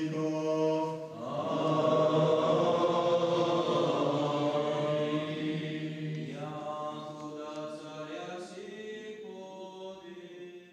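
Men's voices singing Byzantine-rite liturgical chant in long held notes over a steady low drone. It swells about a second in and then slowly fades over the last few seconds.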